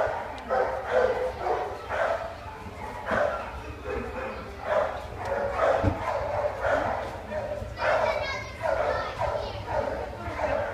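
Dogs barking and yipping over and over, about once a second, with some higher whining yips near the end.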